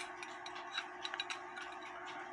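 Faint ticking and small uneven clicks from the exposed movement of a running Lux Pendulette clock, with one sharper click right at the start.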